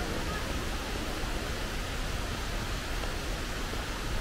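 Steady, even rushing background noise of a large airport terminal hall, with no distinct events.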